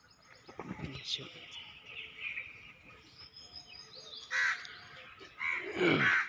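Birds calling: faint chirping, with two short loud calls, one about four seconds in and one near the end.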